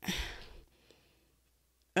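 A woman's sigh: one breathy exhale lasting about half a second, fading out.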